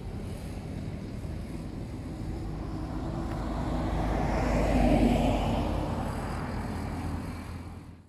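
Traffic and wind noise picked up by a smartphone's microphone while walking beside a road: a steady low rumble of wind on the mic, with a passing vehicle swelling to its loudest about five seconds in and fading away.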